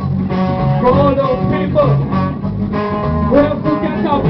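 Skinhead reggae band playing live, an instrumental passage between verses: a bass line under a lead melody with held and bent notes.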